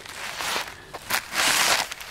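Footsteps, a few rustling steps with the loudest about a second and a half in.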